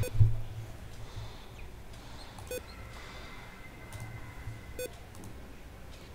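A few sharp computer mouse clicks, a couple of seconds apart, over a low steady hum.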